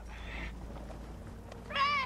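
A short, high, wavering cry near the end, over a steady low rumble.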